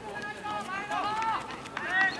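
Several people shouting short, overlapping calls to cheer on the runners as the pack goes by, with the loudest shout at the very end.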